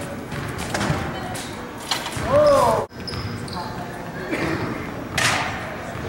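Thuds and footfalls on a hard gym floor, echoing in a large hall, with the strongest thud about five seconds in. A voice calls out briefly about two seconds in.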